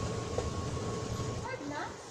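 Metro train moving past along the platform, a low rumble with a steady whine that fades out about a second and a half in as the train leaves.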